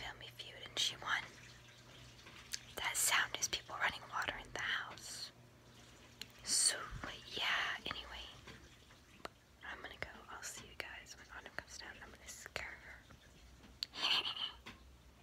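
A girl whispering close to the microphone, in short breathy phrases with pauses between them.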